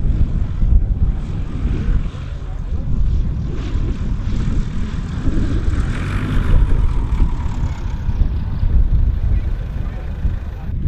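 Propeller engine of a yellow Piper Cub light aircraft passing low over the airfield. Its drone swells to a peak about six seconds in and then fades, over heavy wind rumble on the microphone.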